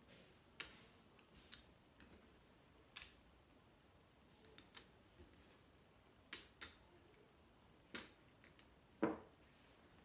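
Casino chips clicking against each other as they are counted and stacked by hand: sharp single clicks at uneven intervals of about a second, some in quick pairs.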